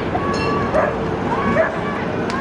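Celebrating street crowd: scattered short shouts and whoops rising and falling in pitch over a steady crowd din.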